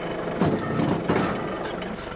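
John Deere 3039R compact tractor's three-cylinder diesel running under hydraulic load as it raises the Rhino TS10 flex-wing mower's side wings to the folded position. A cluster of knocks and rattles from the moving wings comes from about half a second in to near the end.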